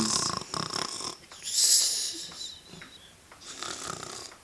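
A person's voice doing mock snoring: hissing, rasping breaths that come about every two seconds.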